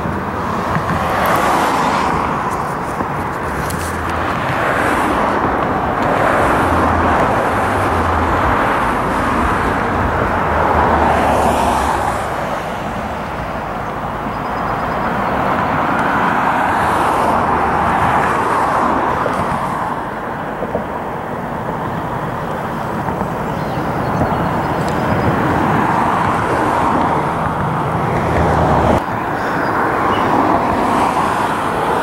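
Road traffic on the bridge roadway: cars passing one after another, the tyre and engine noise swelling and fading every few seconds over a steady rumble.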